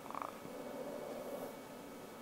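Breathing through a nasal-pillow breathing mask: a brief rough, fluttering buzz right at the start, then faint airflow.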